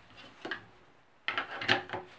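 Plastic trash-bag holder knocking against a kitchen cabinet door as it is hooked over the door's edge: a faint tap about half a second in, then a quick cluster of sharp knocks and clicks in the second half.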